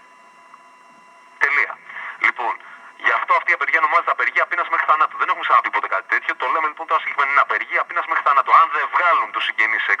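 Speech only: a man talking in Greek over a telephone line carried on a radio broadcast. It begins after a pause of about a second and a half, with a few words and then steady talk.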